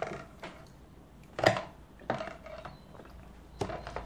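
Watercolour painting materials being handled at the work table: about four separate light clicks and knocks, spread out.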